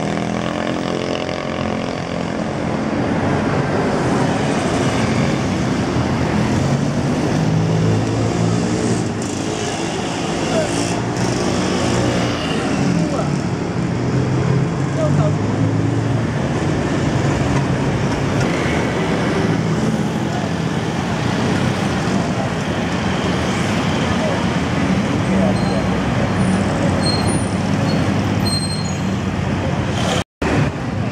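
Busy city street traffic: cars, taxis and motorcycles passing close by with engines running, a continuous mix of engine and tyre noise that rises and falls as vehicles go past.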